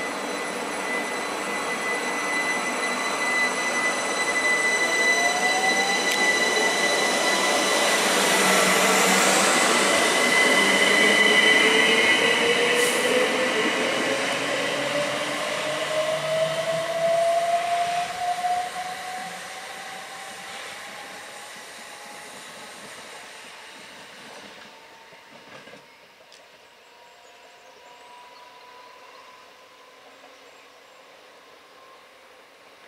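Southern Class 377 Electrostar electric multiple unit pulling away and accelerating, its traction motors giving a whine that rises steadily in pitch. The noise is loudest about ten seconds in, then fades as the train draws off into the distance.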